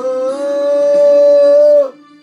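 A man singing one long wordless held note along to a Greek song. The pitch steps up a little about half a second in, holds steady, and cuts off abruptly just before the end, over backing music that carries on.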